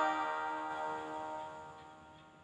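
The last plucked-string chord of a sung folk song ringing on and fading away to near silence.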